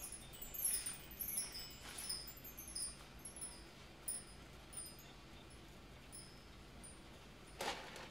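Instruments bumped in the dark: a scatter of high, bell-like tinkles at many pitches that thins out over the first few seconds, then a single knock near the end.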